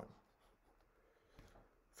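Near silence, with faint scratching of a stylus drawing on a tablet screen and a small tap about a second and a half in.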